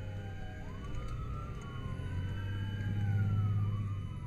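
Emergency vehicle sirens wailing, two of them overlapping, each rising and falling slowly in pitch over a steady low rumble that swells about three seconds in.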